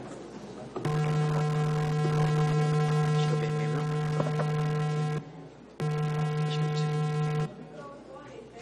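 Loud steady electrical hum or buzz on the room's sound system, a low tone with a ladder of overtones. It switches on abruptly about a second in, cuts out suddenly after about four seconds, then comes back for about a second and a half and cuts out again.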